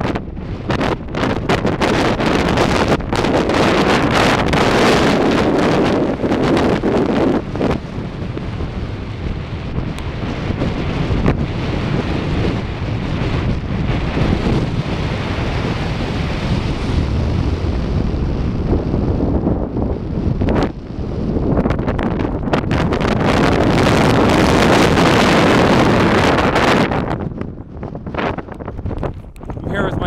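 Strong gusting wind blowing across the camera microphone, loud and rising and falling in surges, easing briefly a few times.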